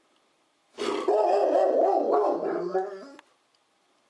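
A dog giving one long, wavering vocal call that starts about a second in and lasts a little over two seconds.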